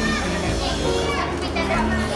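Children's voices and chatter over background music with sustained low notes.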